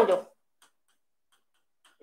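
A few faint ticks of chalk touching a blackboard while writing, in near silence after the last syllable of a spoken word.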